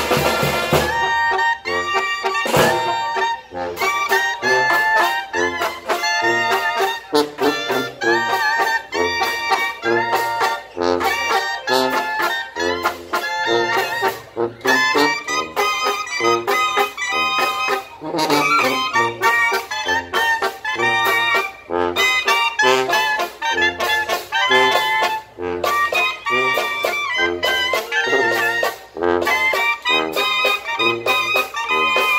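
Live brass band playing a tune: trumpets and trombones with clarinets on the melody, a sousaphone stepping out the bass line, and a snare drum keeping time.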